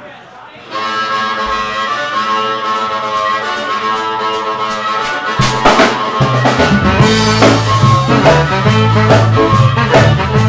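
Live blues band music starting up: sustained chords open the tune, then bass and drums come in about halfway through.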